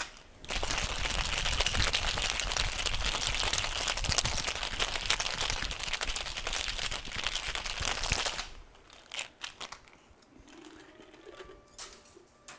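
Ice rattling hard inside a metal cocktail shaker in a fast, short shake of about eight seconds, meant to froth the cream without watering the drink down much; it stops abruptly, and a few light knocks follow.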